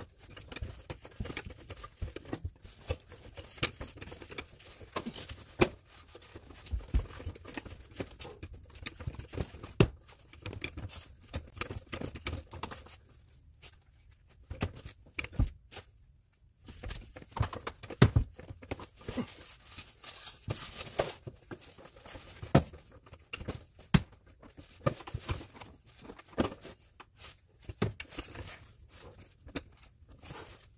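Irregular metallic knocks, clicks and rustling of hands working a Getrag 250G manual transmission on a floor jack into place under the car, with a few sharper knocks standing out and a quieter pause about halfway through.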